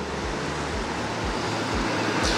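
Street traffic through a live outdoor microphone: the tyre and engine noise of a passing car, growing steadily louder as it approaches.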